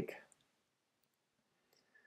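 Near silence broken by a few faint computer clicks as the essay text is selected with the pointer.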